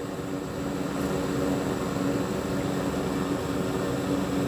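A steady low mechanical hum with a faint drone and even noise, like a fan or motor running, without starts or stops.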